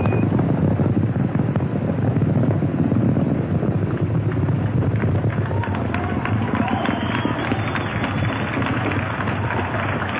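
Steady, crackling low rumble of Space Shuttle Columbia's launch, with its two solid rocket boosters and three main engines burning during ascent.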